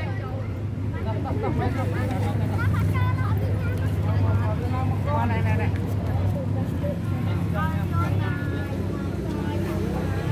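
Indistinct voices talking over a steady low hum.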